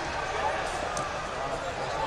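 Several people talking at once in a large hall, with no single voice standing out, and a few faint knocks.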